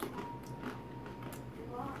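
Plantain chips being chewed: a few faint, scattered crunches.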